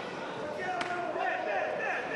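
Arena crowd chatter and calls from ringside, with a single sharp smack of a boxing glove landing just under a second in.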